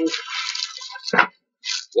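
Plastic wrapping and cardboard packaging rustling and crinkling as a keyboard is pulled out of its box, with a short knock a little over a second in and another brief crinkle near the end.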